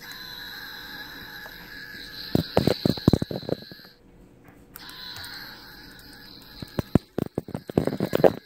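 Electronic scream from a Wasabi Mater toy's small speaker: a long, steady, high-pitched held cry that stops about four seconds in and starts again briefly after. Loud knocks and clicks from the toy being handled cut across it.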